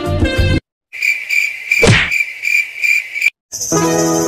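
Background music cuts off suddenly, then an insect chirps in a steady, fast, high-pitched trill, like a cricket, for about two seconds. A single sharp hit sounds partway through. New piano music starts near the end.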